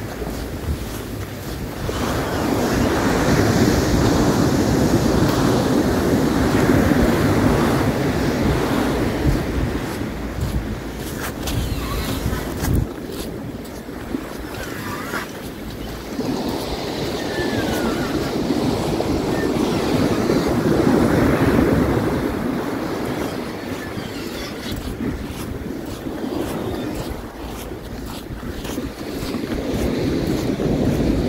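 Ocean surf washing up the beach with wind buffeting the microphone, a steady rush that swells twice for several seconds each time. A few faint light knocks sound near the middle.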